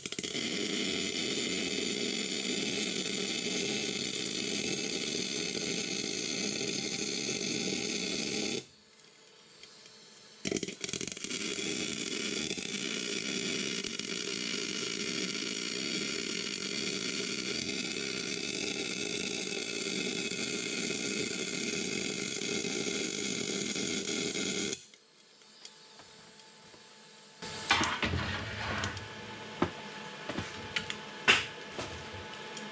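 Electric arc welding: two steady, crackling weld runs laid inside the steel outer race of a tapered roller bearing, the first stopping about a third of the way in and the second starting after a short pause and running until near the end. The bead heats the race so it will shrink free of its housing when quenched. A few knocks and clatter follow near the end.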